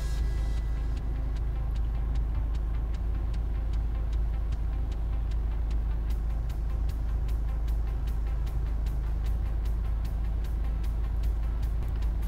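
2018 Kia Sorento's engine idling at about 800 rpm, a steady low hum heard from inside the car's cabin. Faint even ticks come several times a second over it.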